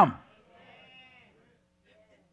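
A man's spoken word ends in the first instant, then the room goes almost quiet. About half a second in, a faint, drawn-out voice-like tone sounds for under a second, over a faint steady hum.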